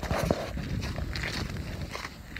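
Footsteps crunching on a gravel lane, with wind buffeting the microphone.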